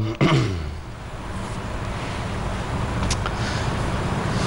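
A man clears his throat, a short sound falling in pitch, followed by a pause of steady low hum and hiss.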